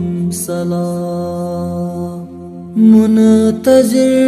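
A male voice singing a Kashmiri naat in long, held, chant-like notes over a steady low drone. The line steps up about half a second in, softens briefly, then comes back louder on a higher note about three seconds in.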